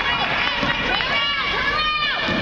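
Basketball game in a gym: three short high squeals, rising and falling, from sneakers on the gym floor as players run the court, over general court noise and voices.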